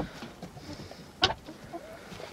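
Several hens clucking softly at close range, with one short, louder call a little over a second in.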